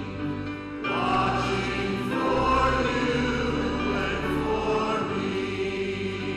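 Congregation singing a hymn together with instrumental accompaniment, in long held notes.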